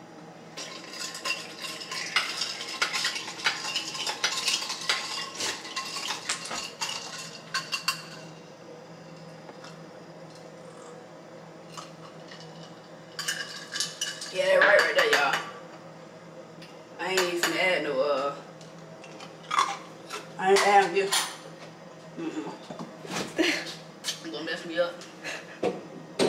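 A metal spoon stirring a drink in a drinking glass: rapid clinking against the glass that lasts about eight seconds, then stops.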